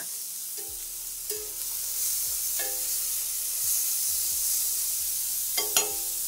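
Quail searing in coconut oil in a hot cast-iron skillet, sizzling steadily, with a few sharp clicks near the end.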